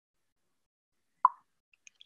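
Near silence, broken about a second in by a single short, sharp plop, followed by two faint clicks just before speech starts.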